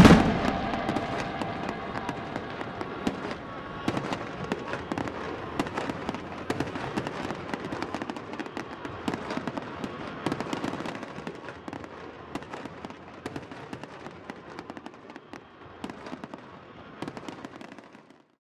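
Fireworks display: a dense, continuous run of crackles and pops that slowly fades away and then cuts off.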